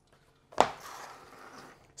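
Items handled on a table: a sharp knock about half a second in, like something set down, followed by about a second of rustling.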